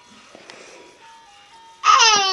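A crib mobile's music box plays a slow tune of thin single notes, faint. Near the end a loud, high-pitched baby squeal breaks in, falling in pitch.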